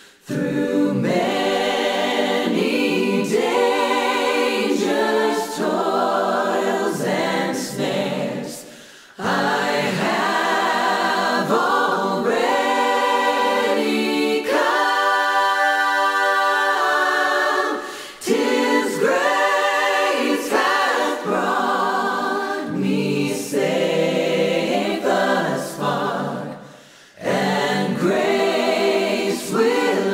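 Choir singing a cappella in long sustained phrases, with short breaks between phrases roughly every nine seconds.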